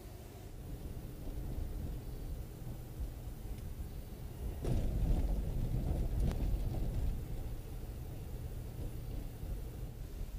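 Low, steady rumble of a car driving, the engine and tyre noise heard from inside the cabin through a dash cam's microphone. The rumble gets louder and rougher a little before the middle, with a couple of knocks.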